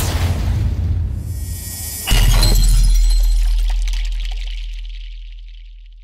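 Animated logo-intro sound effect: a building whoosh with a low rumble, then, about two seconds in, a sudden glass-shatter hit with a deep boom that slowly fades away.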